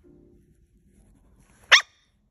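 A poodle puppy lets out one short, shrill scream near the end, sudden and very loud.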